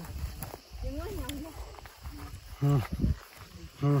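A few short vocal sounds from climbers: a gliding murmur about a second in, a brief voiced sound near three seconds and a short 'mm' near the end, over an uneven low rumble.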